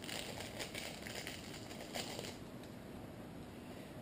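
Faint crinkling and crackling as nitrile-gloved hands handle a new iPhone 4S replacement battery, mostly in the first two seconds, with a small click about two seconds in.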